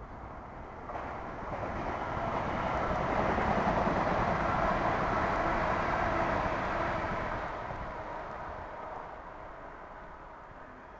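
A passing train. Its noise swells from about a second in, is loudest midway, then fades away toward the end.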